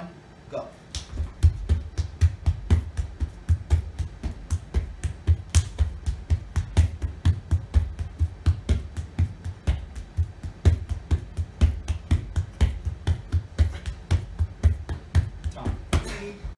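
Rapid, even slaps of palms on a rubber gym floor, about four a second, starting about a second in. A person in push-up position is swiftly moving one hand across to touch the other and back.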